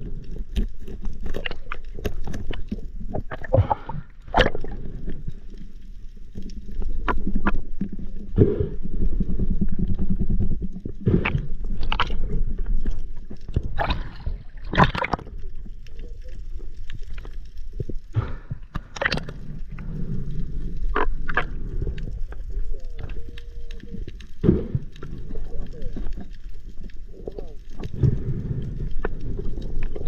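Water sloshing and gurgling around the camera, with frequent sharp clicks and knocks scattered through it.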